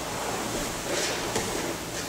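Soft rustling of cotton jiu-jitsu gis and bodies shifting on foam mats, a faint steady hiss with a few slight swells.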